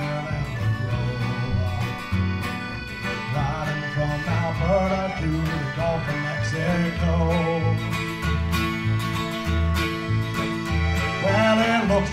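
Acoustic country-bluegrass string band playing an instrumental passage between sung lines: plucked guitar over a steady, evenly paced bass line.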